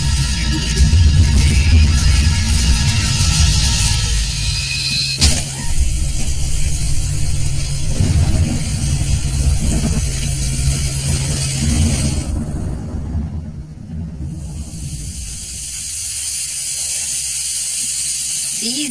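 Film score and sound design: a deep bass drone under a noisy upper layer, with one sharp hit about five seconds in, falling away about twelve seconds in. Near the end comes a steady hiss of pancakes sizzling in a frying pan.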